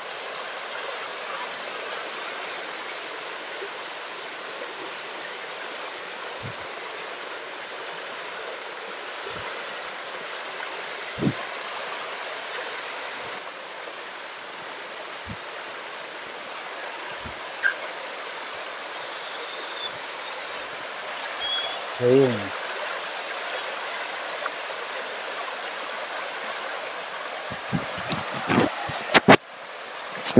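Rain-swollen creek rushing steadily over rocks, its water high and fast after a day of rain. A short voice sounds about two-thirds of the way through, and a few knocks come near the end.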